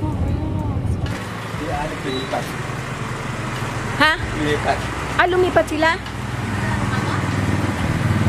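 A vehicle engine hums steadily throughout. The sound changes about a second in, and voices call out briefly near the middle.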